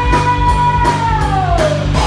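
Live rock band with a fiddle playing loud: electric guitars, bass, and a drum kit keeping a steady beat. A held high note slides down in pitch near the end.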